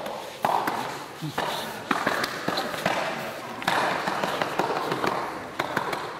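Two people grappling on foam puzzle mats: clothing rustling and bodies shifting, with several short knocks and thumps as one is turned face-down.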